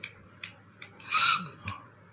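A few scattered computer-mouse clicks as the code editor is scrolled and clicked, with a short soft hiss of breath about a second in.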